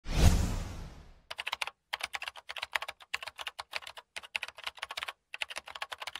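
A loud hit that fades away over about a second, then rapid computer-keyboard typing clicks in quick bursts with short pauses between them.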